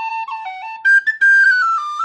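Tin whistle playing a traditional Irish double jig solo: a run of quick stepped notes that climbs to higher, louder notes about halfway through.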